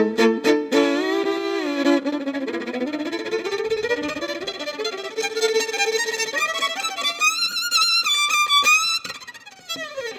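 Solo violin playing a fast Hungarian Roma-style piece: short, clipped bow strokes at first, then held, sliding notes and quick runs that climb high near the end, before the sound briefly drops away.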